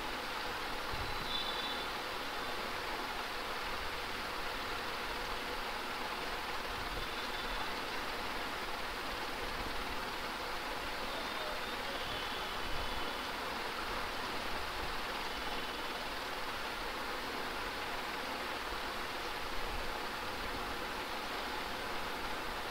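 Steady background hiss and room noise from an open microphone, with a faint low rumble and no distinct events.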